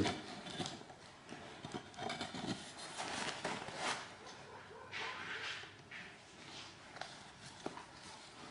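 Faint, scattered knocks and rustling, with short patches of hiss now and then.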